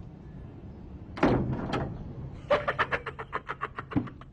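A gate or door shuts with a loud bang about a second in, followed by a smaller knock. From about two and a half seconds in, a man laughs hard in quick, even bursts.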